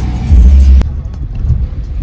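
Bass-heavy music that cuts off abruptly under a second in, followed by the low rumble of a car driving, heard from inside the cabin.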